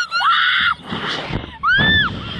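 Young women screaming on a slingshot thrill ride. The first scream is held and high, and a second, shorter one rises and falls near the end.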